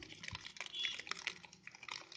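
Green paper gift bag crinkling and rustling as a hand squeezes and turns it: a dense run of irregular crackles and clicks.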